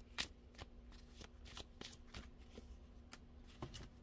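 An oracle card deck being shuffled and handled by hand: a faint, irregular run of card snaps and flicks, a few a second.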